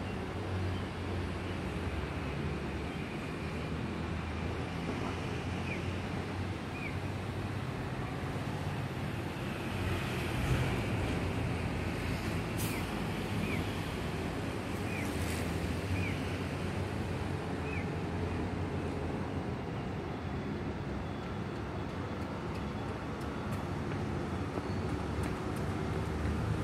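Steady rushing of river water, with rumble from wind on the microphone. A handful of faint, short high chirps sound now and then through the middle.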